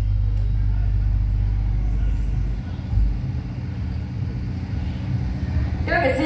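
Low rumble and steady hum from a stage sound system between songs. The deepest part drops away about two and a half seconds in.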